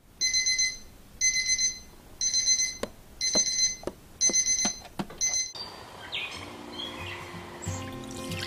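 Sony digital alarm clock beeping in evenly spaced bursts, about one a second, six times, with a few sharp clicks among the later beeps. The beeping cuts off suddenly about five and a half seconds in as the alarm is switched off.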